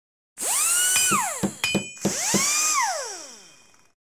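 Logo-intro sound effects: two electronic whooshing sweeps that rise in pitch, hold, then glide down. Several sharp hits and a short bright chime come about a second and a half in, and the second sweep fades away toward the end.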